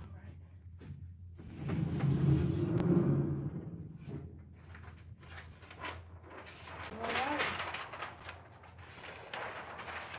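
Large-format heat press opening, its lower platen coming out with a low mechanical run lasting about two seconds. A few seconds later comes paper rustling as the cover sheet is peeled back off the pressed sublimation shirt.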